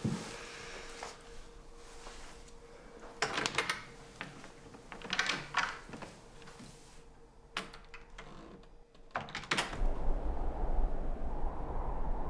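Footsteps and door handling in a house: a few short clusters of knocks and scuffs spaced a couple of seconds apart over a faint steady hum. Near the end a low rumbling drone sets in.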